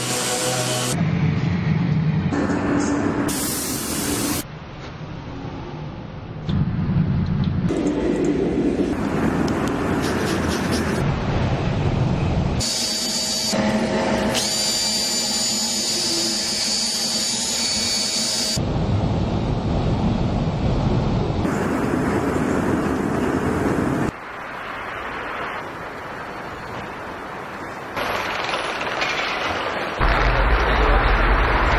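Workshop power tools in a series of short clips that change abruptly every few seconds, beginning with a random orbital sander working a wooden panel. One stretch near the middle carries a steady high whine.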